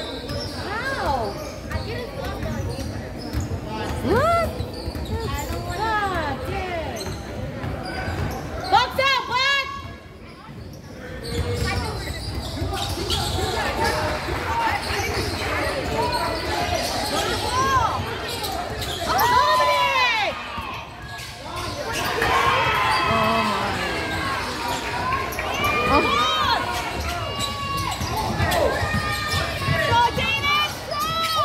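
A basketball being dribbled on a hardwood gym floor, with frequent short high squeaks of sneakers on the court and the voices of players and spectators, echoing in a large gym.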